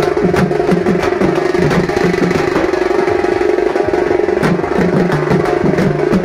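Frame drums beaten in a driving dance rhythm, the strikes thinning out in the middle and returning strongly about four and a half seconds in, over a steady humming drone.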